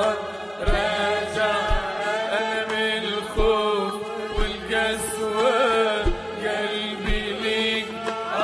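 A man singing an Arabic Christian worship hymn (tarnima) into a microphone in a long, melismatic line, over a held low backing note and a low drum thump about once a second.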